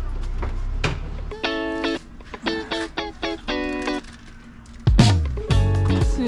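Background music of short pitched notes, likely plucked strings. About five seconds in, a louder sound breaks in and a voice begins.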